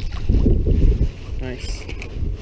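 Wind buffeting an action camera's microphone over open water: a loud low rumble that eases off about a second in.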